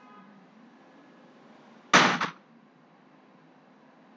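One short, loud burst of noise about two seconds in, lasting under half a second, over a faint steady room hum.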